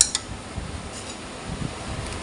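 Instant noodles sizzling steadily in a hot wok, with a sharp clack of a wooden spatula against the pan right at the start and a softer one just after.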